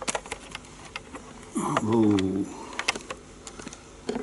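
Sharp clicks and handling noise from a head-worn microphone being settled in place, with one short held vocal sound about halfway through.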